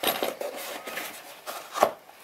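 A foam tray insert with lens motors in it being handled in a hard-shell accessory case: foam rubbing and scraping against the case, with a sharp knock near the end as it is set back down.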